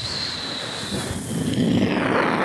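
A man imitating a jet airliner's engines with his voice into a handheld microphone: a long whooshing rush of noise that grows louder in the second half.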